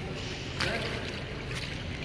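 Pool water splashing and lapping in an indoor swimming pool: a steady wash that swells into a brighter rushing hiss about half a second in, with a couple of light knocks near the end.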